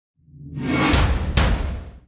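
Logo-intro whoosh sound effect: a noisy swell over a deep low rumble that builds up, cuts through with two sharp swishes about a second in, then fades away.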